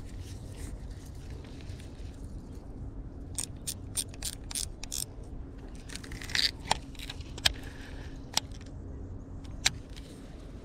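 Clicks and taps from a baitcasting reel and rod being handled as a jerkbait is twitched and reeled in, close to the microphone. A quick run of about half a dozen clicks comes a few seconds in, then scattered single clicks, over a low steady rumble.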